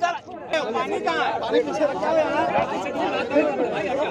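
Crowd chatter: several men talking at once, voices overlapping close around the microphone.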